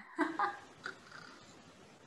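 A woman's brief laugh carried over a video call: a few short, high-pitched bursts in the first second, then faint steady line hiss.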